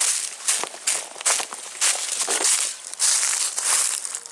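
Footsteps crunching and rustling through dry fallen leaves in quick, irregular steps.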